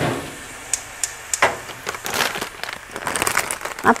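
A plastic bag of fresh baby spinach crinkling and rustling as it is picked up and handled, in short irregular bursts with scattered small clicks.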